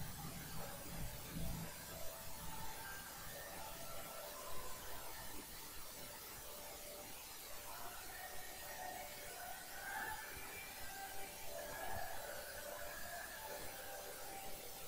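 Quiet room tone: a steady hiss with faint, scattered short sounds.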